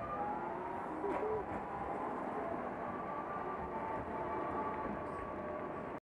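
A tram pulling away close by, its electric drive giving a few steady whining tones over the rumble of the street.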